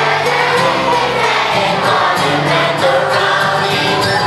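Acoustic old-time string band playing live: banjo, guitar, fiddle and upright bass together, with steady bass notes under the strumming.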